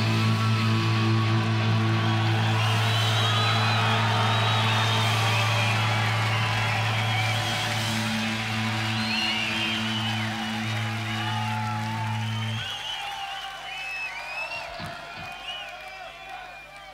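A rock band's final held low chord from amplified guitars drones steadily over a festival crowd cheering, whooping and whistling. The chord cuts off suddenly about twelve and a half seconds in, leaving the crowd's cheers.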